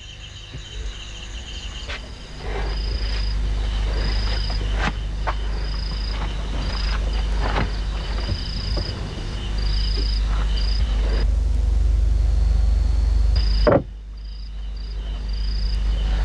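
Crickets chirping in short repeated high-pitched bursts over a steady low rumble, with scattered faint clicks. Everything drops out for a moment near the end and then comes back.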